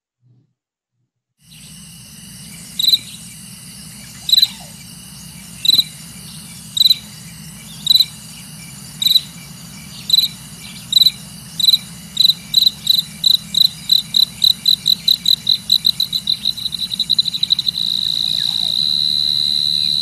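Cricket chirps over a steady background hum. They come about a second apart at first, then speed up steadily until they merge into one continuous tone near the end, in the way a car's rear parking sensor beeps faster as an obstacle gets closer.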